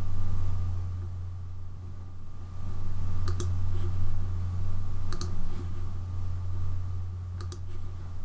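Computer mouse button clicks: a few short, sharp clicks, some in quick pairs, about two seconds apart, as the eraser tool is used. Under them runs a steady low hum.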